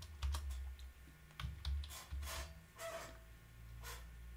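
Typing on a computer keyboard: a run of irregular keystroke clicks with short pauses between them.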